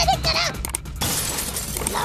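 Cartoon sound effect of a prison cage's bars being smashed apart: a sudden breaking crash about a second in that carries on to the end. Before it comes a short burst of a high cartoon character's voice.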